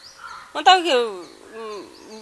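A woman's voice: a short utterance falling in pitch about half a second in, then a fainter falling sound near the end.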